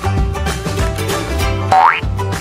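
Upbeat intro music with a steady beat. Near the end, a quick rising whistle-like sound effect sweeps up in pitch and is the loudest sound.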